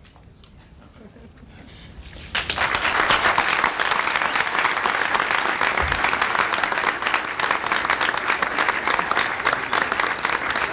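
After a quiet start, an audience suddenly breaks into applause about two seconds in and keeps clapping steadily.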